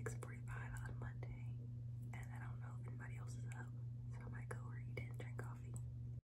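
Faint whispered speech in three short stretches, over a steady low hum, with a few light clicks.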